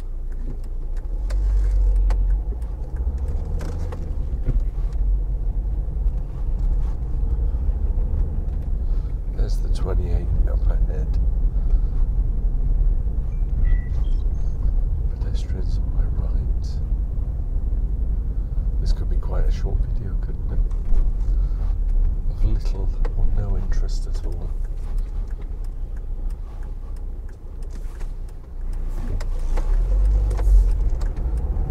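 Car interior noise while driving slowly on a residential road: a steady low rumble of engine and tyres heard from inside the cabin, growing louder about two seconds in as the car moves off.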